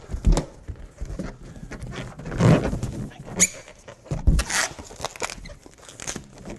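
Long latex modelling balloons being handled: rubbing and rustling, with a short rubbery squeak about three and a half seconds in.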